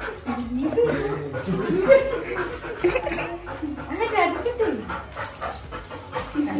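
A dog whining and whimpering in pitched calls that slide up and down, begging for food from a bowl held above it. Voices are mixed in.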